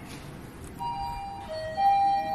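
Mitsubishi elevator's electronic arrival chime: a few steady bell-like notes in a stepped melody, starting about a second in, the loudest note coming near the end as the car arrives.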